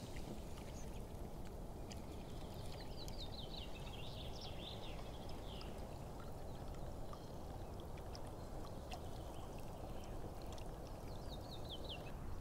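Water running from a wooden spout into a log water trough, a steady low rush. A small bird's short, falling chirps come a few seconds in and again near the end.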